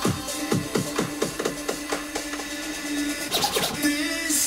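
Electronic dance music played through a DJ controller, with a quickening roll of drum hits that stops about a second and a half in and leaves a held low tone. A short scratch-like sweep comes near the end.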